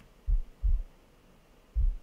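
Heartbeat sound effect: low, paired lub-dub thumps, one double beat about a third of a second in and the next beginning near the end.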